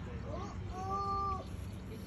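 A wordless, meow-like vocal sound: a short gliding call followed by a longer call held on one pitch for about half a second, over a low rumble.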